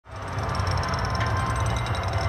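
A steady low rumble with a faint, pulsing high whine above it, fading in quickly over the first half-second.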